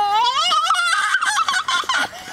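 A toddler's high-pitched wordless vocalizing: a long rising note, then a fast warbling call that wavers up and down in the second half.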